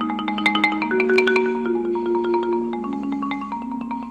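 Yamaha marimba played with four mallets: low notes are held in a roll while quick higher notes run over them. The playing is busiest in the first half and eases off toward the end.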